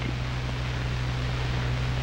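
Steady hiss with a low, constant hum: the background noise of an old film soundtrack.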